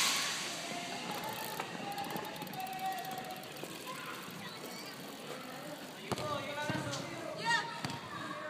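Voices of teenagers talking and calling at a distance, with one louder call near the end. A brief rush of noise is fading away at the very start.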